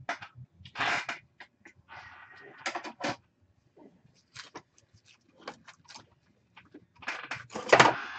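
Handling noises on a tabletop: intermittent rustling and light clicks and knocks, with a louder rustle near the end.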